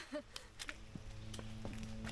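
Soft footsteps on a wet dirt forest trail, a few light steps about three a second. About a second in, background music with sustained chords fades in under them.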